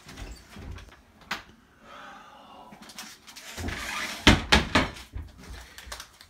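A kitchen cupboard being opened and shut, with knocks and thuds of things being moved: one sharp knock a little over a second in, then a cluster of sharp knocks about four to five seconds in.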